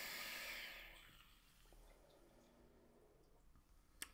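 Airy hiss of a draw on a sub-ohm vape, air pulled through the Wasp Nano atomizer's airflow past a 0.3-ohm coil firing at 65 watts, ending about a second in.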